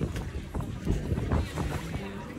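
Wind buffeting the phone's microphone, with lagoon water sloshing around people standing in it, in uneven gusts.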